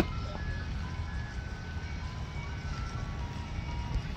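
A simple electronic chime tune of single clear notes stepping up and down, over a low steady rumble.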